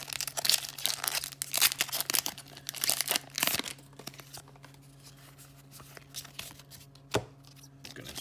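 Foil booster-pack wrapper crinkling and tearing as it is pulled open, dense and crackly for the first few seconds, then quieter rustling of the trading cards being handled, with a single sharp tap near the end.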